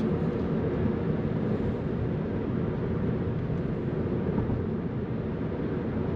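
Steady hum of engine and tyre noise inside the cabin of a 2009 Pontiac G6 GXP cruising at highway speed, its 3.6-litre V6 running smoothly under an automatic transmission.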